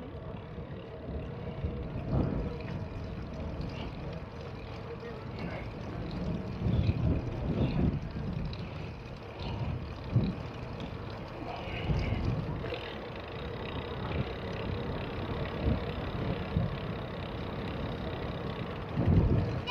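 Wind rumbling on the microphone of a moving bicycle, with rolling road noise and irregular louder gusts.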